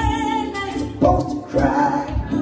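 A man singing a song live, holding a long note and then starting a new phrase about a second in, with electric keyboard accompaniment underneath.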